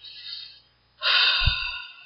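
A person's faint breath in, then a louder sigh out starting about a second in and trailing off, with a soft low thump partway through.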